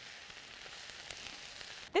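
Shredded cabbage, carrots and onions frying in bacon fat in a skillet, giving a steady sizzle as the vegetables crisp near the end of cooking.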